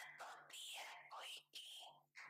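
Faint, soft speech close to a whisper, in short phrases with brief gaps.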